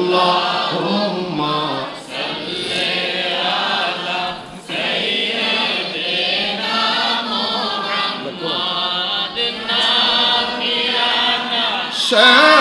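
A gathering of men chanting an Islamic devotional chant together in unison, line after line, with short breaks between the lines.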